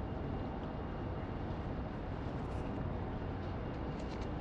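Steady low background noise of a room, an even hum and hiss with no distinct events.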